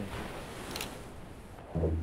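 Quiet, steady outdoor background hiss. Near the end a low, held musical note comes in.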